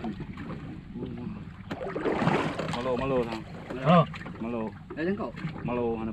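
Men's voices calling out in short exclamations over steady wind and sea noise, with a brief rush of noise about two seconds in.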